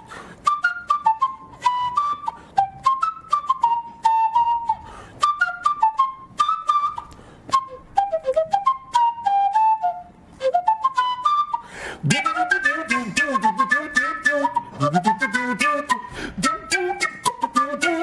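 A wooden end-blown flute playing an improvised solo melody of short, sharply attacked notes. About twelve seconds in, the sound grows denser, with a lower, bending line added underneath the flute.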